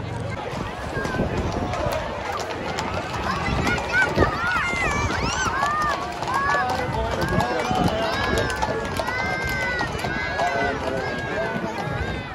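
Parade crowd's voices, overlapping calls and chatter, with the hooves of a carriage horse team clopping on the road as a horse-drawn coach passes.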